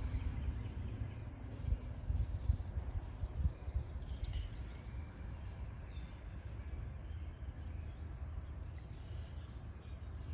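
Outdoor background noise: an uneven low rumble, with a few faint bird chirps now and then.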